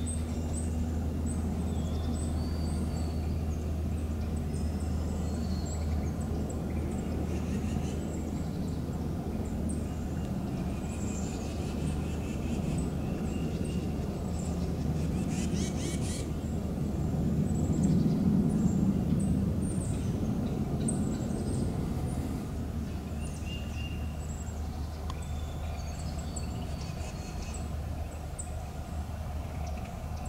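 Small birds giving short, high chirps and calls scattered throughout, over a steady low rumble that swells louder about eighteen seconds in.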